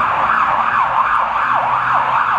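Emergency vehicle siren sounding loudly in a fast rising-and-falling yelp, about three sweeps a second.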